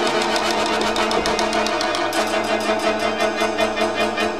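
Orchestral music from a rock band playing with a symphony orchestra: held chords under a fast, even repeated figure of about ten strokes a second.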